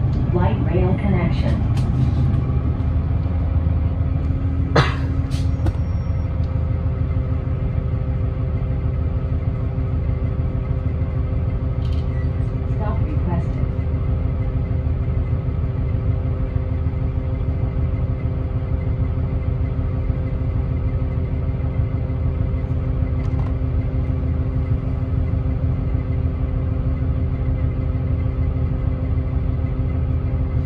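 Cabin sound of a 2010 Gillig Low Floor Hybrid 40-foot transit bus with its Cummins ISB6.7 diesel running: a steady low rumble under several steady hum tones. A single sharp knock comes about five seconds in.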